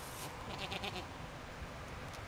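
A short bleat from a farm animal, about half a second in, over steady low outdoor background noise.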